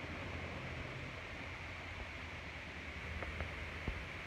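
Steady outdoor background noise, an even hiss over a low hum, with a few faint clicks near the end.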